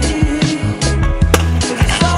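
Stunt scooter wheels rolling and clattering on concrete, with a sharp clack a little past halfway, under background music with a steady beat.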